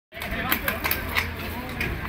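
Chatter of riders and onlookers with a string of sharp clicks, about five in under two seconds, from mountain bikes setting off.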